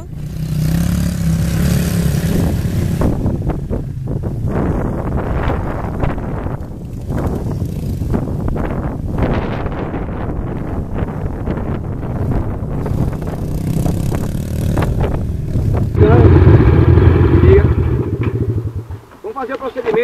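Honda CRF230 dirt bike's single-cylinder four-stroke engine running at low speed as the rider takes tight turns on a dirt track. Near the end a louder, closer rumble takes over for a few seconds, then drops away abruptly.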